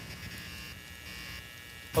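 A faint, steady buzz with a low hum under it.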